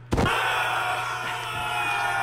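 A bin full of squeaky rubber toys squeezed all at once: a dense chorus of many high squeals that starts suddenly and is held.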